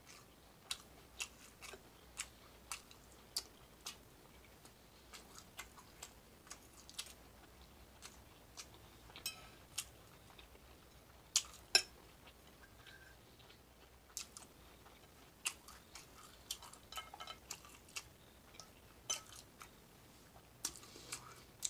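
Close-miked chewing and mouth sounds of someone eating bacon, scrambled eggs and biscuits: short sharp clicks and smacks scattered throughout, the loudest pair about eleven and a half seconds in.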